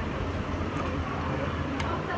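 Restaurant dining-room background noise: a steady low rumble with indistinct chatter, and a short clink of cutlery near the end.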